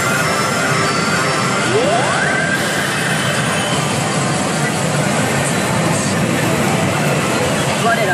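Pachinko machine sound effects over a steady, dense din, with a thin tone slowly rising and a quick rising sweep about two seconds in.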